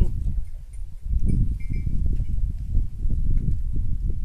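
Wind buffeting the microphone: an uneven low rumble that dips briefly about a second in.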